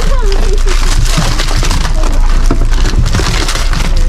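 Rummaging by hand through a pile of packaged goods under a wicker basket: continuous crinkling and rustling of packaging with small knocks and creaks as things are shifted.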